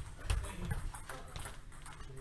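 Table tennis rally: the plastic ball clicking off paddles and the table in a quick irregular series, with low thuds of shoes on the wooden floor in the first second.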